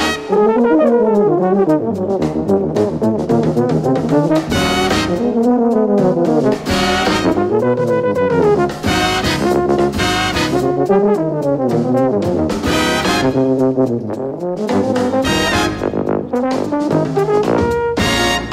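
Live jazz big band playing, with tuba and euphonium soloists carrying a low brass melody that bends and slides, punctuated every two to three seconds by full brass-section hits.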